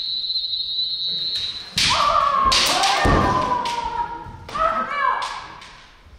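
Kiai shouts from armoured practitioners in a naginata-against-kendo bout, with sharp knocks of bamboo weapons and stamping feet on a wooden floor. A high held shout opens. A long falling shout starts about two seconds in, with several sharp strikes, and a shorter shout comes near the end.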